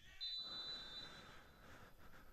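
A referee's whistle, heard faintly: one steady high blast about a second long, shortly after the start, over faint stadium ambience. It signals that the free kick may be taken.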